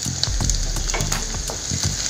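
Diced carrots sizzling in hot oil in a kadai, with a few short knocks and scrapes as they are stirred with a wooden spatula.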